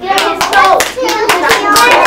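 A group of young children clapping irregularly, with excited children's voices calling out over the claps.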